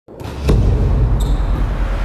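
A volleyball struck once with a sharp slap about half a second in, over a steady low rumble. A brief high squeak follows just over a second in.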